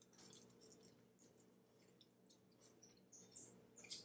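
Near silence: room tone with faint, scattered small clicks of people chewing food.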